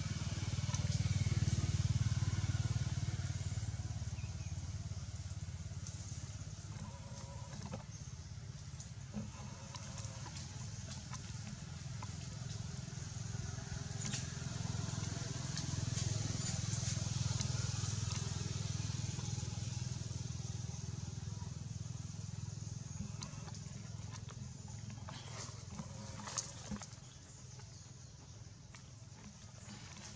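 Low rumble of motor traffic that swells and fades twice, over a steady high hiss, with a few light clicks near the end.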